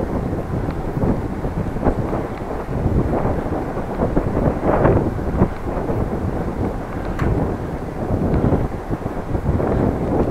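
Wind buffeting the microphone of a camera on a moving bicycle, an uneven rumble that swells and dips in gusts.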